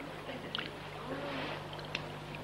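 Swimming-pool ambience: a steady wash of water with a few short splashes and faint distant voices.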